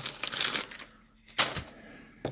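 Plastic bag of battery leads and connectors being handled, a crinkly rustle, followed by a few sharp clicks and knocks as it is set down on the wooden bench.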